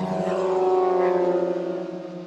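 Propeller engines of a formation of aerobatic biplanes passing low overhead. Their pitch falls as they go by, the sound is loudest about a second in, and it fades near the end.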